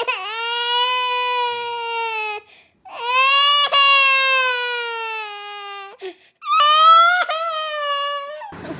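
A boy wailing in three long, high-pitched drawn-out cries, each held for two to three seconds with brief breaks between them; the last cry wavers in pitch.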